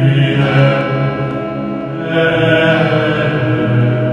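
Opening theme music of chanted voices over sustained, droning tones, with a fresh phrase swelling in about halfway through.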